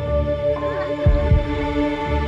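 Horror film score: a sustained, tense drone of held tones with low heartbeat-like thumps, a double beat about a second in.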